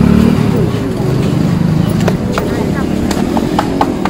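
Crowd chatter with a motor vehicle engine running close by, and a few sharp cracks in the second half.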